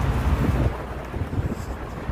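Wind buffeting the phone's microphone over road traffic noise, a heavy low rumble that drops away about two-thirds of a second in.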